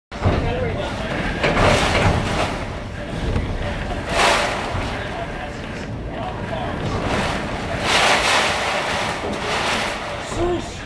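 Hurricane wind and driving rain: a continuous rushing that surges in stronger gusts about three times, with wind buffeting the microphone.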